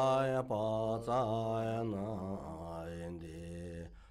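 Deep male voice chanting a mantra in long held tones over a steady low drone. The pitch steps down about halfway through, and the chant breaks briefly right at the end.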